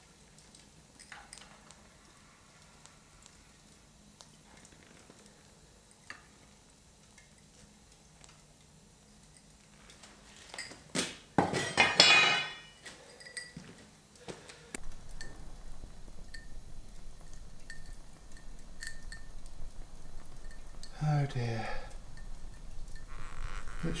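Steel pouring shank and crucible clanking against the metal stand and concrete floor as they are set down, a short loud metallic clatter about halfway through. Faint ticks and clinks come before it and light clinks follow.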